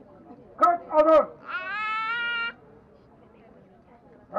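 A man shouting military drill commands: two short barked syllables about half a second in, then one long drawn-out syllable rising slightly in pitch, after which it goes quiet.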